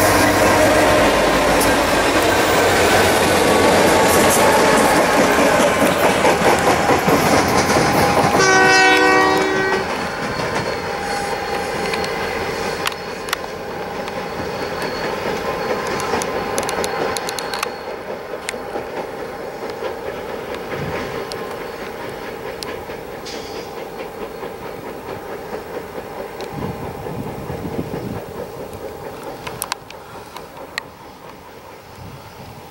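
A string of Union Pacific EMD diesel locomotives running light passes close by, their engines loud and their wheels clicking over the rail joints. A train horn sounds for about a second near the nine-second mark. After that a quieter train rumbles in from a distance.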